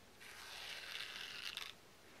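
Metallic thread being drawn through the wound-thread surface of a temari ball after a stitch: a soft, rasping hiss lasting about a second and a half.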